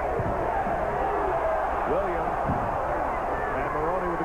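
Arena crowd noise during live basketball play: a steady wash of many voices with a few low thuds from the court.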